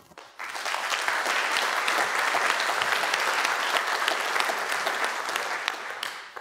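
Audience applauding, a dense patter of many hands that builds within the first second, holds steady and begins to die away at the end.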